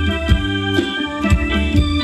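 Live band playing ramwong dance music through a PA: an electronic keyboard carries the melody and chords over a steady drum beat of about two hits a second.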